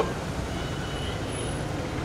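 Steady low rumble and hiss of road traffic, with a faint thin high tone around the middle.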